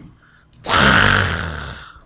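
A man's loud, breathy exhalation or sigh close to the microphone, starting about half a second in and fading out over about a second.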